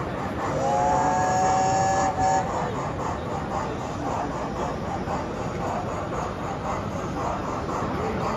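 Sound-fitted model steam locomotive sounding a chime whistle for about two seconds, then a steady chuffing beat of about three strokes a second as it runs.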